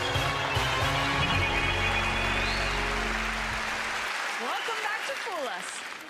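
Television game-show theme music with a strong bass that stops about four seconds in, giving way to a studio audience cheering and applauding.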